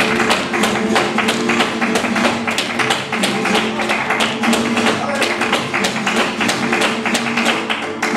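Flamenco soleá: two flamenco guitars playing, with dense sharp percussive strikes from the dancer's footwork (zapateado) and hand clapping (palmas).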